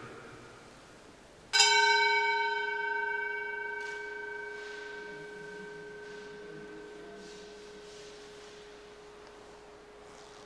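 An altar bell struck once at the elevation of the consecrated host, its tone ringing on and fading away slowly over the following seconds.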